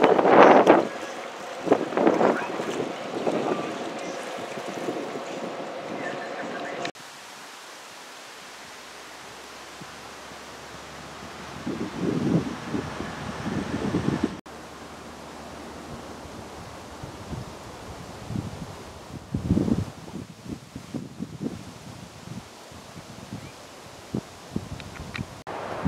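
Wind buffeting the microphone over an outdoor background, with a few indistinct voices in the first seconds; the sound changes abruptly twice at edits between clips.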